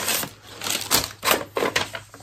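Paper packaging rustling and crinkling as a package is handled and opened, in several quick irregular rustles, the loudest about a second in.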